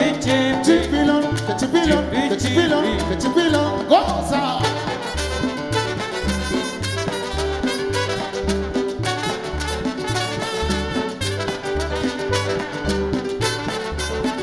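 Live salsa band playing an instrumental passage: bass and percussion keep a steady beat while trombones play. A long held note comes in about halfway through.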